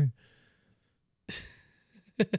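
A man's short breathy exhale, like a sigh or a laugh-breath into a close microphone, about a second and a half in, after a moment of near quiet.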